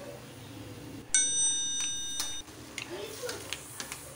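Subscribe-button overlay sound effect: a bright electronic bell chime rings once, starting suddenly about a second in and lasting just over a second, followed by a few light clicks.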